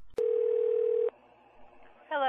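Telephone line click, then a single steady phone tone, just under a second long, that starts and stops abruptly.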